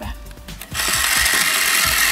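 The small clockwork-like mechanism of a toy television that moves its picture, running with a rapid even clicking of about six clicks a second. About three-quarters of a second in, a loud steady whirring hiss joins the clicking.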